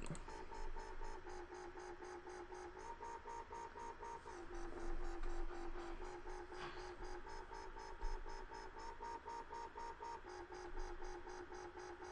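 Dubstep wobble bass synth patch made in NanoStudio, playing a short sequence of low notes whose tone pulses evenly, about four times a second, with the note changing every few seconds.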